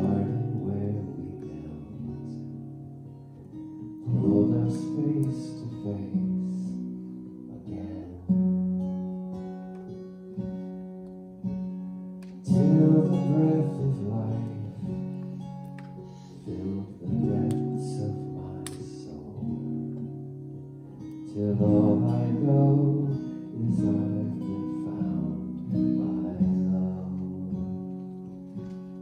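Acoustic guitar playing an instrumental passage of a song: slow strummed chords, each left to ring out before the next.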